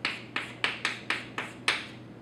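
Chalk on a chalkboard while writing an equation: a quick run of about seven sharp taps and short scrapes, which stop shortly before the end.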